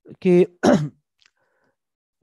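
A man says one short word, then briefly clears his throat with a rough sound that falls in pitch.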